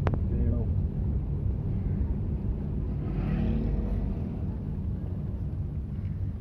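Car driving on a paved road, heard from inside the cabin: a steady low engine and road rumble. A sharp click right at the start.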